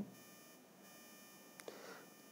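Near silence in a pause between sentences: only a faint steady electronic whine from the recording, with a small soft click about one and a half seconds in.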